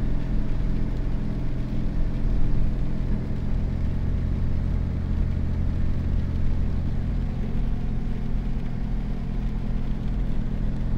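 Steady low drone of a car's engine and road noise heard from inside the cabin, with a slight shift in its low pitch about three seconds in.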